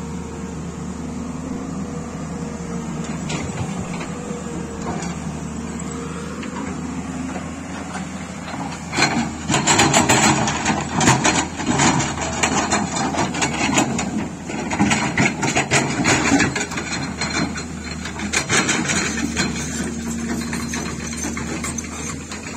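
Tata Hitachi 210 Super crawler excavator's diesel engine running steadily as its bucket digs into rock and mud debris. From about nine seconds in, stones clatter and knock against the steel bucket in a rapid, irregular string of impacts.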